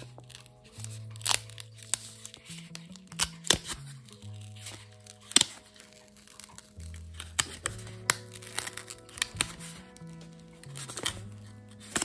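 Paper crinkling and crackling, with some tearing, as a tightly sealed paper packet is worked open by hand, in scattered sharp crackles. Soft background music with slow, steady low notes runs underneath.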